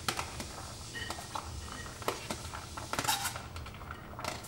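A fork and a plastic meal-prep container clinking and scraping against a ceramic plate as food is tipped and pushed out onto it: scattered light clinks and scrapes, with a cluster about three seconds in.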